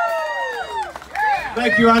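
Several voices whooping with falling pitch just as the song ends. About a second and a half in, a man starts talking over the PA.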